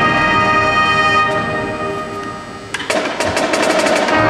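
High school marching band holding a sustained brass chord that fades away. Near the three-quarter mark the drumline strikes in with a quick run of hits and the full band comes back in loudly.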